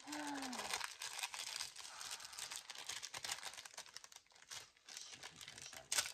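Clear plastic packaging crinkling and crackling in irregular bursts as it is handled and opened.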